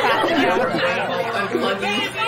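Several voices talking over one another at once: overlapping chatter.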